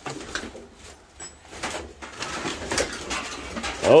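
Bird calls in the background, with scattered light knocks and shuffling.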